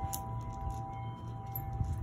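Faint metallic ringing held at a few steady pitches, with a few light clinks and a low steady hum underneath.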